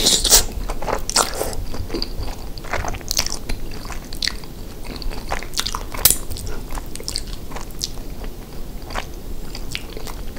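Close-miked chewing of a mouthful of chili cheese rice casserole: a steady run of short mouth clicks and smacks. The loudest moments come right at the start and about six seconds in, as bites are taken off a plastic spoon.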